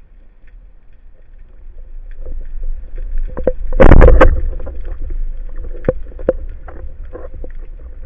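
Band-powered speargun firing underwater about four seconds in, heard through the gun-mounted camera's housing: a loud half-second bang and rattle as the rubber bands release and the shaft leaves. Sharp clicks and knocks come before and after it, over a low steady rush of water.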